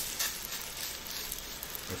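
Breaded mullet roe frying in very hot pork lard in a cast-iron skillet: a steady, fairly gentle sizzle. The roe holds little water, so it sizzles less than wetter food would.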